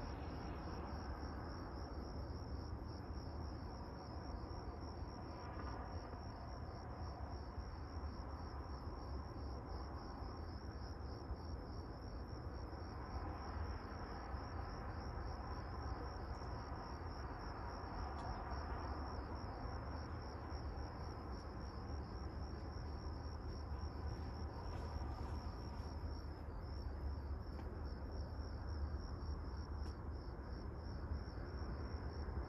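Crickets chirping at night: a steady, high, finely pulsing trill, over a low steady rumble.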